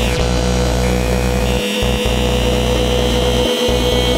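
Electro dance music: a heavy sustained synth bass that cuts out briefly about every two seconds, under a steady mid-pitched drone, with a higher synth line coming in about a second in.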